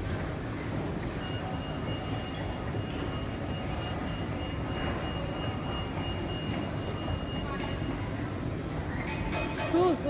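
Indoor shopping-centre atrium ambience: a steady din of background noise, with a thin steady high tone held for several seconds in the middle. A voice comes in near the end.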